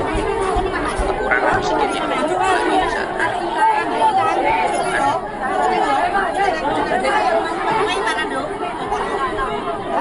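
A crowd of many people talking over one another, a steady mass of overlapping voices.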